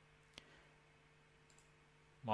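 Near silence with a faint steady hum, broken by a single faint computer mouse click about a third of a second in.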